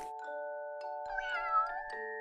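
Soft background music with held tones and a few light struck notes. About a second in, a short gliding, wavering pitched sound effect plays over it.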